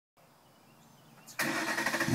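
Near silence, then about one and a half seconds in the 2012 Ford Mustang GT's starter suddenly begins cranking its 5.0 V8 for a cold start, the sound building toward the engine catching.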